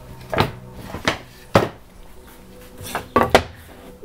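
Wooden workpieces, a flat MDF plate and a small wooden block, handled and set down on the CNC router's wooden table: several separate knocks, the sharpest about one and a half seconds in and near the end.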